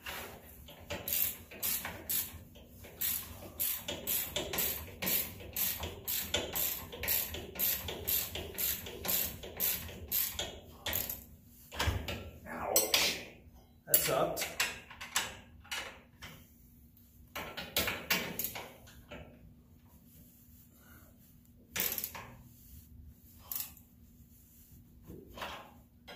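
Hand ratchet wrench clicking as a bolt on a UTV's front suspension is tightened: a quick, steady run of clicks for about the first ten seconds, then scattered clicks with pauses between them.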